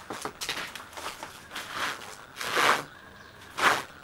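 Newspaper seedling pots being handled and shifted in a plastic seed tray: a few short rustles and scrapes of paper, the loudest near the end.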